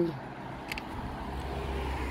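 A car on the street, its engine and tyre rumble building from about halfway through as it draws nearer, with a brief click about a third of the way in.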